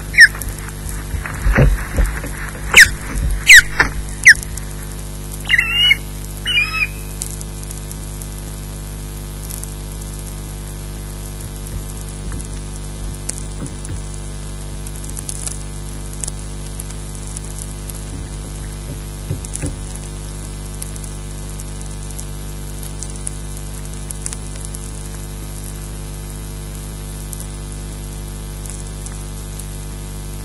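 Juvenile osprey flapping its wings on the nest right beside the microphone, a quick run of loud wingbeats over the first few seconds, with two short high calls about six seconds in. After that, only a steady hum with occasional faint ticks.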